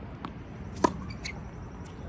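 A tennis ball bouncing on a hard court, then struck with a racket in a forehand: a soft bounce a quarter-second in and a sharp pop of the strings a little before halfway, the loudest sound.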